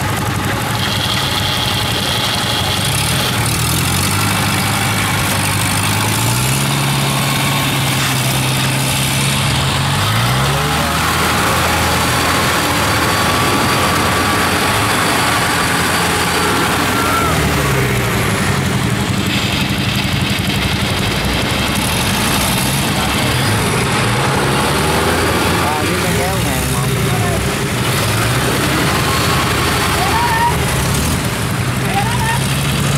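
Kubota combine harvester's diesel engine running. Its pitch rises and falls several times as it is revved and eased while the machine sits bogged in mud.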